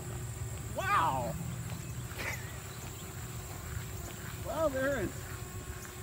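A man's voice making two short wordless exclamations, one falling in pitch about a second in and one rising and falling near the end, over a steady low background rumble.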